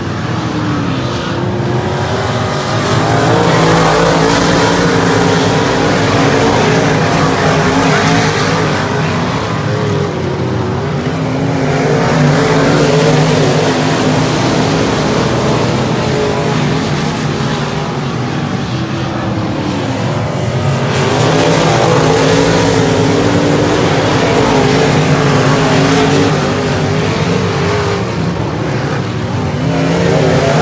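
Dirt-track modified race cars' V8 engines running hard around the oval, the engine note rising and falling as the cars go through the turns and swelling louder several times as they come past.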